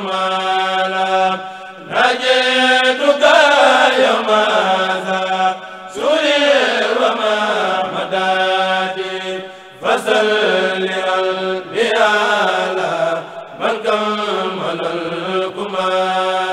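A Mouride kourel, a group of men chanting a religious poem in unison with voices only. They hold long phrases, each a few seconds long, broken by brief pauses about every two to four seconds.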